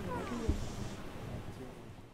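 Faint voices in a quiet hall, with a couple of short falling pitched calls near the start and one soft thump about half a second in, fading toward quiet.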